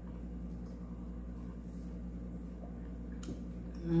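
Quiet room tone with a steady low hum, and a faint click about three seconds in.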